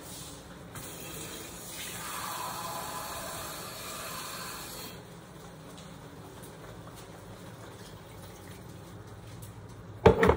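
Water running from a kitchen tap for about three seconds, starting a couple of seconds in, over a faint steady low hum.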